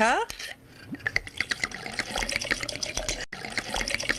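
Liquid being poured from a bottle into a cup, glugging and bubbling. It starts about a second in, with one brief break near the end.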